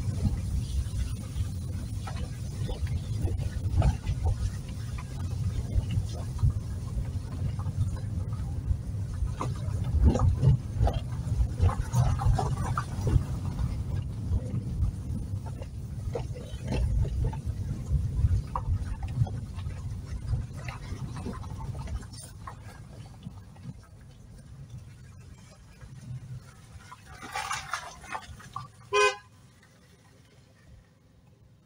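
Low rumble of a car driving over a rough, muddy dirt road, heard from inside the cabin, with scattered knocks and rattles from the bumps; the rumble quietens about three-quarters of the way through. Near the end, a brief car horn toot.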